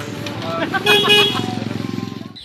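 A small motorcycle engine running close by, a low steady putter that grows a little stronger toward the end, with voices over it.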